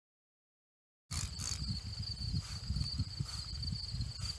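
Silence for about a second, then crickets trilling steadily outdoors over a louder, uneven low rumble on the microphone.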